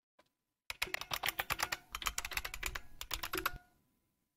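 Typing on a computer keyboard: a quick run of keystrokes, entering a password, lasting about three seconds and ending with the Enter key.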